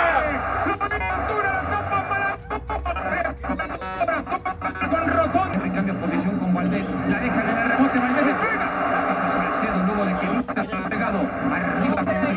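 Sound of the televised football match: dense, loud stadium-broadcast audio with voices and music mixed together, no single voice standing out.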